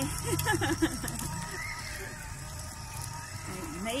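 A woman's voice and laughter briefly near the start and again at the end, over a faint steady background tone.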